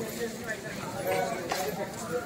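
People talking in the background, with a few short, sharp knocks.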